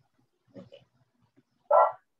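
Two short dog barks, a faint one about half a second in and a louder one near the end.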